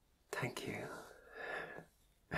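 A man's soft, breathy whispering without clear words, starting shortly after the beginning and trailing off near the end.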